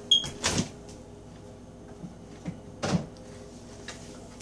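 A few short knocks and clunks as a milk carton is handled while milk is poured into a steel mixing bowl and the carton is set down. The loudest come about half a second in and just before three seconds, with fainter taps between.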